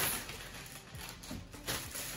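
Clear plastic bag crinkling as it is pulled from a mailer and handled, loudest at the very start and again near the end.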